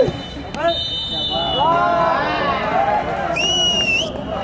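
Spectators chattering at a football ground, with thin whistle tones about a second in and a louder, shrill referee's whistle blast near the end.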